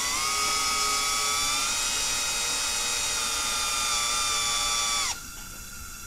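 Cordless drill/driver running in reverse, backing the plastic spring adjustment button out of a gas regulator to lower its outlet pressure: a steady motor whine that rises slightly in pitch at first, then holds and stops suddenly about five seconds in.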